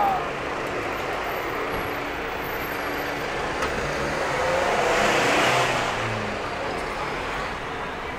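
Street traffic: a motor vehicle passes on the road alongside, its engine and tyre noise swelling to a peak about five and a half seconds in and then fading.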